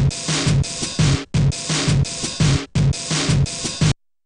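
Sampled breakbeat drum loop played from a step sequencer at 170 BPM: kick, snare, foot-pedal hi-hat and open hi-hat one-shot samples in a one-bar pattern that repeats about three times, then stops abruptly near the end.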